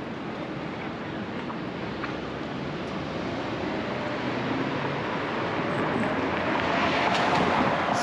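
City street traffic noise: a steady wash of passing cars and tyres, slowly growing louder toward the end.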